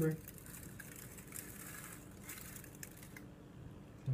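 Faint crinkling and scattered small clicks as a toddler's fingers pinch salt from a plastic tub.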